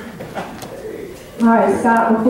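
A short lull with faint room noise, then about one and a half seconds in a woman's voice starts speaking, loud and clear.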